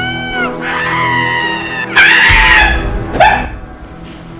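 A woman screaming over background music. The loudest scream breaks out suddenly about halfway in, followed a second later by a short, sharp cry that falls in pitch.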